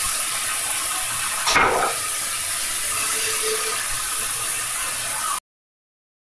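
Food sizzling in a frying pan over a gas flame: a steady crackling hiss with one brief louder burst about a second and a half in, cutting off suddenly near the end.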